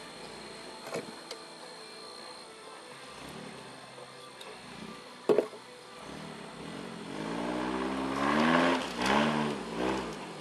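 Off-road 4x4's engine running low at first, then revving up and down in several surges during the last few seconds as the vehicle works through brush. A single sharp knock about five seconds in.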